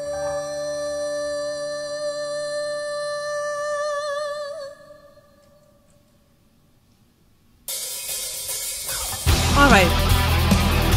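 A woman singing one long held note over a sustained piano chord, wavering at the end and fading out about halfway through. After a short near-silent pause, a loud cymbal wash comes in suddenly, and drums and the rest of the rock band start up near the end.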